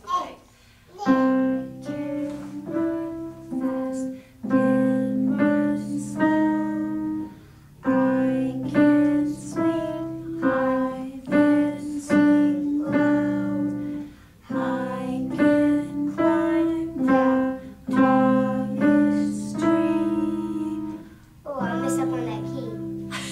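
A simple beginner's tune played on a digital piano in short phrases, with brief pauses between them, and voices singing along.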